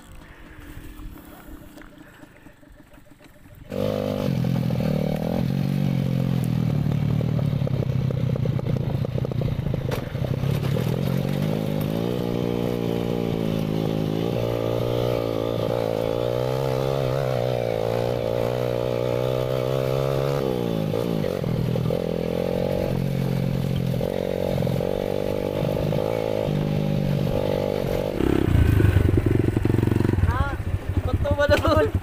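Dirt bike engine, low for the first few seconds, then running loud under load with its pitch rising and falling as the throttle opens and closes, louder again near the end.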